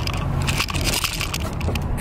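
Steady low rumble of a car cabin while driving, with rubbing and shifting noise from a handheld camera being moved about.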